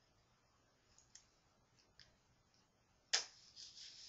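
Plastic-gloved hands working a squeeze-bottle hair rinse into hair: a few faint clicks, then a sharp click about three seconds in, followed by rustling of glove against hair.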